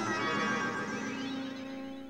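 Cartoon teleportation sound effect: shimmering synthesizer tones with sweeping pitch glides over a held low tone, fading away through the two seconds.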